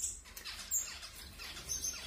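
Small caged finches chirping: a few short, high calls.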